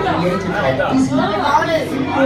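Speech: people's voices talking, with no other sound standing out.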